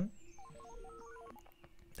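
Telephone keypad dialing tones: a quick run of short beeps at changing pitches over a steady lower tone, faint.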